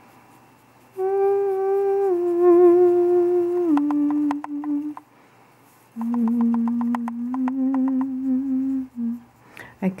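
A woman humming: long held notes that change pitch in small steps, in two phrases with a short pause between them about halfway through.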